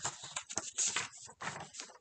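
Pages of a picture book being handled and turned: a quick run of paper rustles and small clicks.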